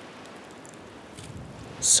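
Steady low background hiss, with no distinct event, until a voice starts at the very end.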